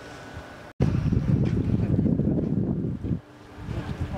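Wind buffeting the camera microphone: a loud, low rumble that starts abruptly about a second in after a short cut in the sound, eases off near three seconds and gusts back near the end.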